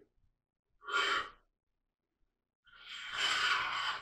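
Flat scraper drawn along the barrel channel of a wooden rifle stock, taking off shavings in two strokes: a short one about a second in and a longer one near the end.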